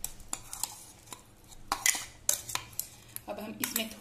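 Metal spoon clicking and scraping against a steel mixer-grinder jar as thick paste is scraped out into a glass bowl: a run of sharp clicks with a longer scrape about two seconds in.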